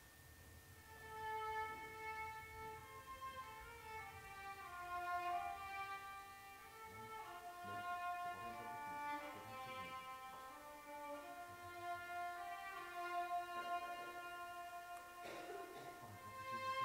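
A violin played solo, a slow melody of long held notes.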